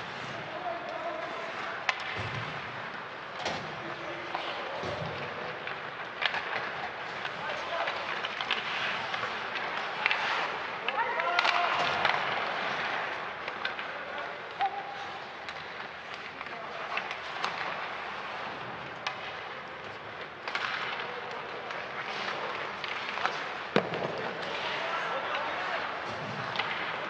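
On-ice sound of an ice hockey game: skates scraping the ice, sharp knocks of sticks, puck and boards coming at irregular intervals, and players' shouts.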